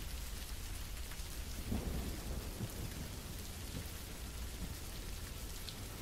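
Steady hiss of rain with a low rumble of thunder, a recorded storm ambience, swelling slightly about two seconds in.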